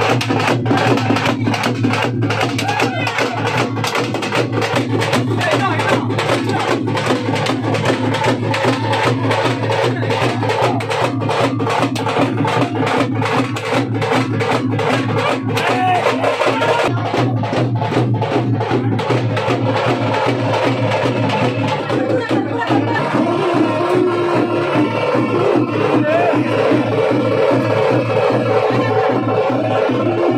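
Live Veeragase ensemble music: fast stick drumming on barrel drums over a steady drone. A little past halfway the drum strokes thin out while the drone carries on.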